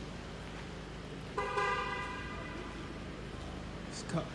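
A car horn sounds once, about a second and a half in, lasting about a second and fading out, over a steady low hum.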